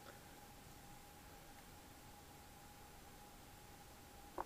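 Near silence: room tone with a faint steady tone.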